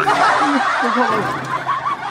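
Laughter: several people chuckling at once, easing off in the second half.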